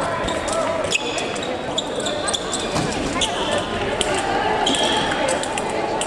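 Busy fencing-hall ambience: indistinct voices in a large reverberant hall, with scattered sharp clicks and thuds and several brief high ringing tones, typical of footwork and sabre blades on nearby pistes.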